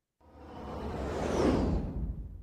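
Whoosh sound effect that swells for about a second and a half with a falling high sweep, then fades away.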